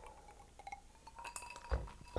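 Quiet sipping from a glass of white wine, with a faint clink of the glass about a second and a half in and a soft low knock near the end as the glass is set down.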